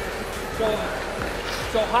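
People talking, with faint music underneath and a steady low hum.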